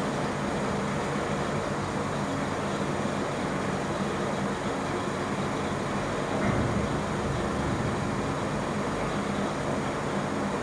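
Steady background noise: an even hiss with a faint low hum, swelling slightly about six and a half seconds in.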